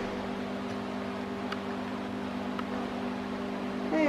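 A steady low mechanical hum from a motor or appliance running, with a few faint clicks.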